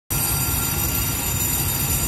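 Steady interior running noise of a Taiwan Railway EMU900 electric multiple unit standing at the platform: a low rumble with several high, steady whining tones above it.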